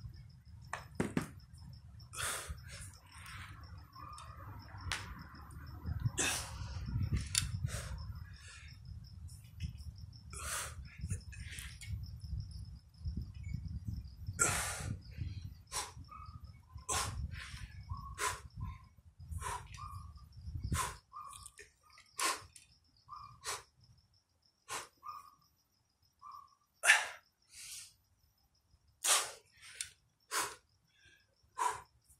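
A man's short, sharp exhalations, one every second or two, as he lifts a barbell through repeated reps. A low steady hum sits under them and stops about two-thirds of the way through, and a faint high steady tone runs throughout.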